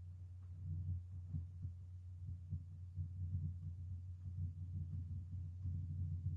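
Steady low electrical hum on a quiet line, with faint, irregular soft low thumps scattered through it; no speech.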